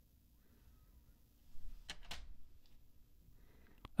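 A quiet room with two faint, sharp clicks about two seconds in and a smaller one near the end: hard plastic graded-card slabs being handled and shifted in the hands.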